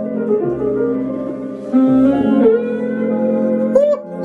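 Music sampled from a cassette tape and played back from a Roland SP-404A sampler: sustained melodic notes with a guitar-like sound, stepping up in level about halfway in, with a short upward pitch bend near the end.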